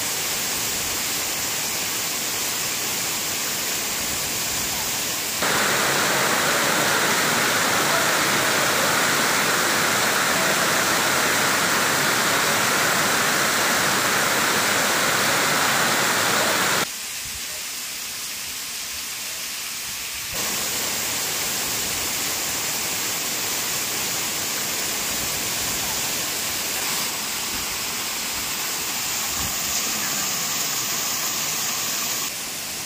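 Steady rushing of heavy water from rain-swollen waterfalls cascading over rocks and steps. The sound jumps louder about five seconds in, drops at about seventeen seconds and picks up again about three seconds later.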